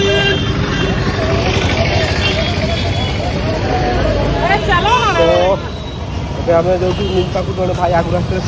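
Busy street traffic noise, with a motor scooter passing close by and people's voices around.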